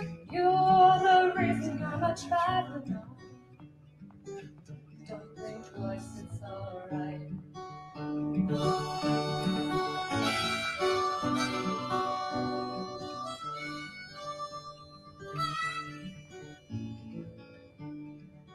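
Acoustic guitar playing a folk accompaniment. A sung line ends in the first couple of seconds, and a harmonica solo comes in about eight seconds in and carries the melody over the guitar.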